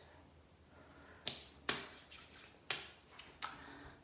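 Hands stroking the skin of the neck and brushing the pajama collar during a neck massage: four short, sharp strokes, each fading quickly, the second the loudest.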